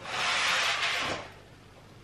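A kitchen oven being loaded with a roasting pan: about a second of sliding, scraping noise from the oven door and rack, fading out about a second in.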